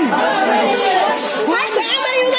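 Several people shouting and talking over each other at once, loud and unbroken.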